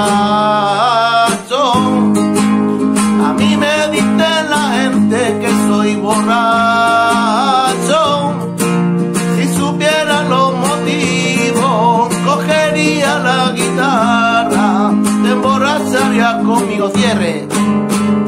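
Spanish nylon-string guitar with a capo strummed in a rumba rhythm, with a man's voice singing over it.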